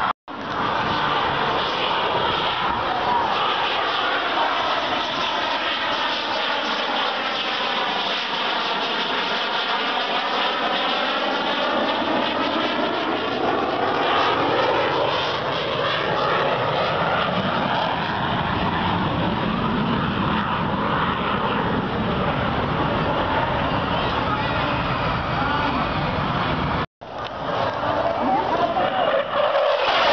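Jet noise of a JAS 39 Gripen fighter flying a display pass, a loud continuous rush with bands that sweep down and back up in pitch as it passes. The sound drops out briefly just after the start and again near the end.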